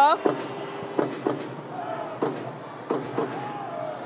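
Football stadium ambience during a free kick: crowd noise with scattered sharp knocks and a few short shouts.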